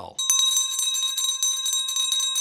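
Bell sound effect ringing in a rapid, steady trill, starting a moment in: the cue for viewers to ring the YouTube notification bell.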